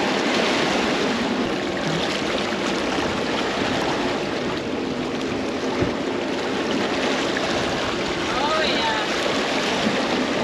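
Steady rush of sea water along the hull of a sailboat under way.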